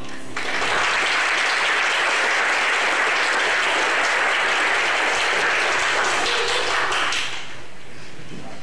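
Congregation applauding steadily for about seven seconds, beginning just after the singing ends and dying away near the end.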